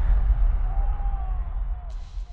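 Outro sound effect: a deep, steady rumble with a faint wavering tone above it in the second half, easing off toward the end.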